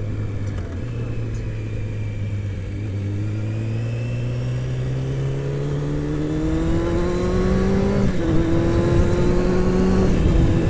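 Honda CBR600 inline-four engine pulling under acceleration, its pitch rising steadily for about eight seconds, with a brief break near the end as it shifts up, over wind rush on the helmet.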